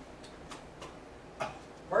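A few soft, irregularly spaced clicks over quiet room noise, then a man's voice starts right at the end.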